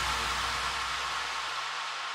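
A wash of white noise with fading low tones in an electronic dance track breakdown. It slowly dies away, and the deep bass drops out shortly before the end.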